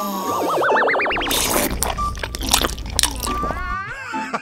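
Cartoon sound effects over music. In the first second a wobbling, rising boing-like warble plays, then about two and a half seconds of dense crackling and clicks over a low hum. A short rising glide sounds near the end.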